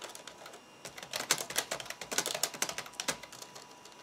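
Typing on the IBM ThinkPad 760XL's long-travel laptop keyboard: a quick run of key clicks, sparse for the first second and then dense until about three and a half seconds in.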